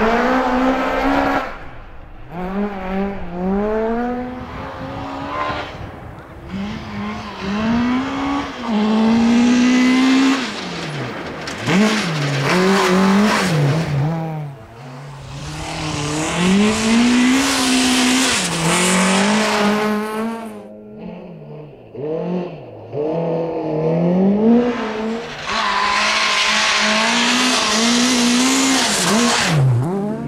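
Volkswagen Golf Mk3 rally car's engine revving hard, its pitch climbing and dropping again and again as it shifts through the gears, over several loud passes. A hiss rides along with the loudest stretches.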